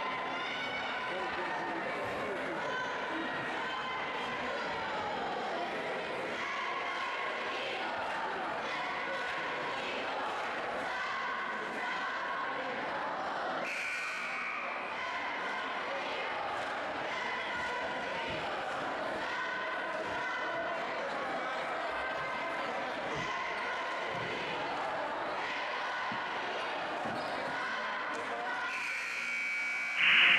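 Steady murmur of a crowd talking in a large school gymnasium, with a few soft thuds.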